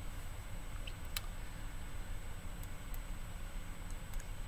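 Quiet room tone with a steady low hum and a few faint, sharp clicks spread across the pause, as of a computer mouse being clicked or scrolled.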